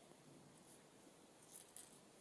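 Near silence, with two faint, short paper rustles near the end as fingers press a small paper butterfly down onto a book-page stamp.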